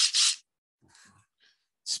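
A short, loud breathy rush of air in two quick surges, like a sharp exhale or sniff, followed by a second or so of near quiet with faint murmurs.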